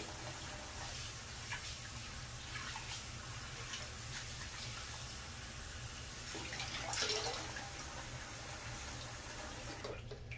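Bathroom sink tap running steadily, with irregular splashes as water is scooped onto the face, one louder splash about seven seconds in; the running water stops near the end.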